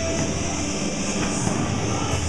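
Steady noisy gym background during a workout, with a faint knock about a second in.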